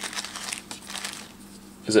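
Opened blind-box packaging crinkling and rustling as a hand rummages for a small vinyl figure: a run of small crackles for about a second and a half.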